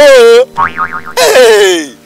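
Cartoon 'boing' sound effect with a fast wobble in its pitch, followed by short chirps and a long falling glide.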